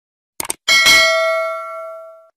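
A quick double mouse click, then a bright bell ding that rings on several tones and fades away over about a second and a half: the click-and-bell sound effect of a subscribe-button animation.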